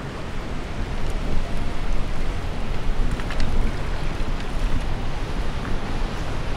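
Steady wind buffeting the microphone over a low wash of harbour water, a fluttering rumble with no distinct events.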